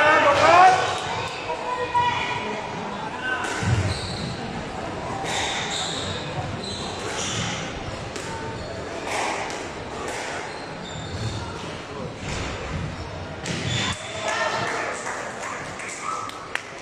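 Squash ball being struck by rackets and knocking off the court walls during a rally, echoing in the hall. Voices are loudest at the start and again near the end.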